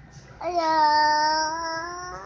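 A young child's voice singing out one long, drawn-out note, starting about half a second in and held nearly steady for about a second and a half.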